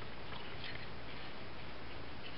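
Faint rustling and creasing of scored patterned paper being folded by hand into an accordion, over a steady background hiss.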